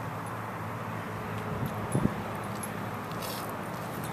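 Steady low hum of road traffic, with a single short knock about halfway through.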